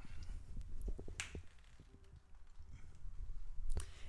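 A few faint, sharp clicks, the clearest a little over a second in, over a low rumble.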